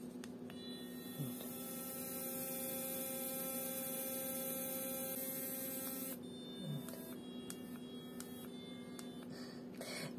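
Bomidi TX5 sonic electric toothbrush running, a steady buzzing hum with several tones from about half a second in. About six seconds in it drops to a quieter buzz of a different pitch.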